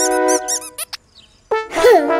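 Cartoon music with squeaky sound effects. A held chord sounds under a quick run of high squeaky chirps in the first second, then a short gap, then a tone that swoops up and back down near the end.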